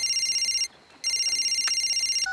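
Cartoon mobile phone ringing with a high, rapidly fluttering electronic trill. It sounds as two rings, with a short break about two-thirds of a second in.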